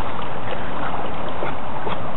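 Steady rush of flowing river water, with light splashing from a dog paddling against the current.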